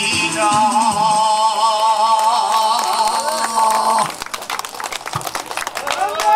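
A man sings one long held note with vibrato through a microphone and PA over backing music, the closing note of a song, which ends about four seconds in. Scattered clapping follows.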